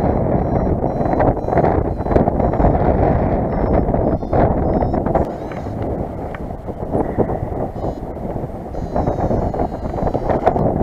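Wind rushing over the microphone of a paraglider pilot's helmet or harness camera in flight. Through it come the short, faint, high beeps of a paragliding variometer, coming closer together near the end; a variometer's beeping signals that the glider is climbing in lift.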